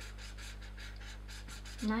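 Felt-tip marker scratching across paper in quick short strokes, several a second, drawing in the eyebrows of a portrait sketch.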